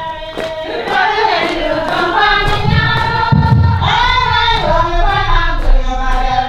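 A group of women singing a song together, with a steady beat of sharp strikes under the voices.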